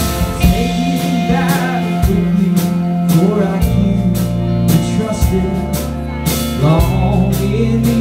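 A rock band playing live: electric guitars and bass over a drum kit, with drum hits at a steady pulse and a wavering melody line on top.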